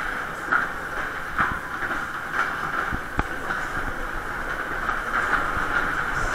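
A Maxwell Waltzer car spinning and rolling round its undulating track, heard from on board: a steady rolling noise with a few sharp knocks.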